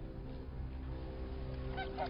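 Soft sustained background music. About one and a half seconds in, domestic geese start honking in quick repeated calls.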